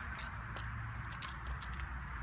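Light clicks and taps of garden-hose fittings and a caulk tube being handled on a concrete block, with one sharper click a little past the middle.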